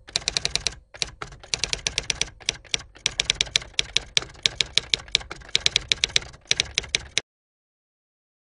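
Rapid typing on keys: a dense run of sharp keystroke clicks with a few brief pauses, cutting off suddenly about seven seconds in.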